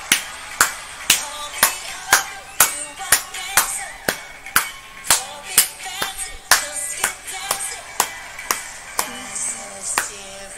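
Hands clapping steadily in time with music, about two claps a second, stopping near the end. A song plays more quietly underneath.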